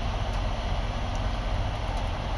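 Steady low rumble with an even hiss, from a running engine and climate fan heard inside a vehicle cab.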